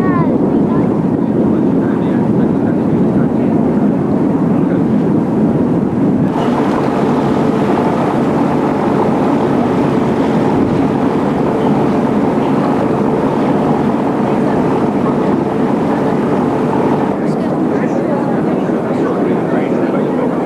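Steady drone of the motor ship MS Oldenburg's diesel engines under way, with water rushing past the hull and wind on the microphone. The hiss of wind and water grows louder about six seconds in and eases again near the end.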